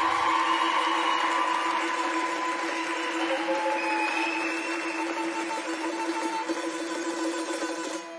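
Audience applauding and cheering, with a steady held musical note underneath.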